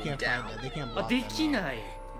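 Dialogue in Japanese from an anime: a character shouts a line, with soundtrack music under it. A steady high note enters about a second in.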